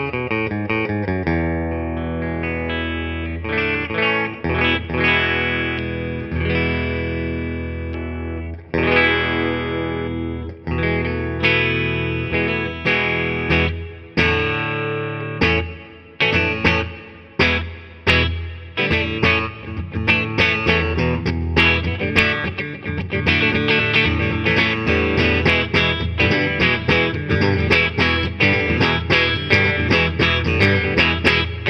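1973 Fender Telecaster Deluxe electric guitar with Lollar Wide Range humbucking pickups, amplified. For about the first nine seconds, chords and notes ring on with long sustain. Then come single struck chords left to decay, and for the last ten seconds or so it is strummed quickly and steadily.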